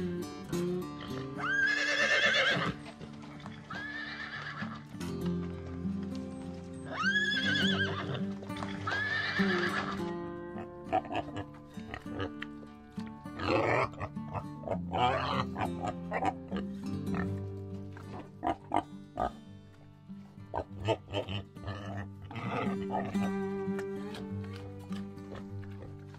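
A horse whinnying several times over steady background music, in the first ten seconds. In the second half come clusters of short grunts from pigs.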